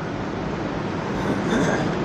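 Steady rushing background noise with no speech.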